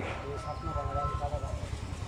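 Faint background voices of people talking, over a continuous low rumble.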